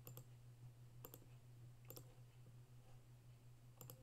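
Four faint clicks of a computer mouse button, each a quick press and release, spaced about a second apart with a longer gap before the last, over a faint low steady hum.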